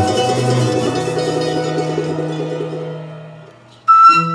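Andean folk ensemble playing live: a rapid plucked tremolo from charango and guitar over a held double bass note, fading away about three and a half seconds in. Just before the end the band comes back in loudly with a flute melody.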